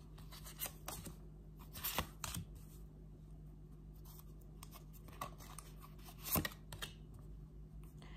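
Tarot cards being drawn from the deck and laid face-up on a wooden tabletop: a handful of short, soft snaps and taps, the loudest about six seconds in, over a faint steady hum.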